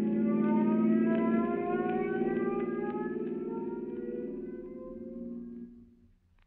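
Radio-drama sound effect of a car speeding away, its whine rising slowly in pitch as it fades out.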